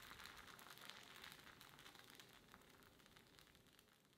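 Faint sizzling and crackling of thin red rice dosa batter cooking on a hot cast iron tawa over the lowest flame, fading away toward the end.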